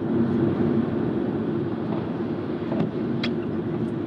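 Road traffic passing on a highway: steady engine and tyre noise from vehicles, including heavy lorries.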